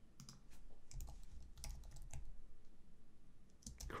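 Typing on a computer keyboard: a quick, uneven run of faint key clicks.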